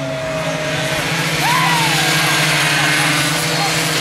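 Racing mini-motorcycle engines buzzing at high revs; the pitch sinks slowly in the first second, then rises and falls again a little later as the sound swells, like a bike coming off the throttle into a corner and revving out of it.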